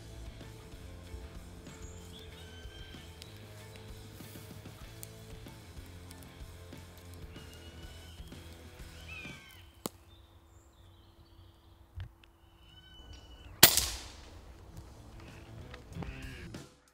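Background music that stops about ten seconds in, then a single sharp crack of an Air Arms Galahad .22 FAC air rifle firing near the end, with birds calling around it.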